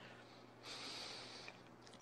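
A man's faint breath in, a soft hiss lasting under a second in the middle of a pause in his speech, over a faint low steady hum.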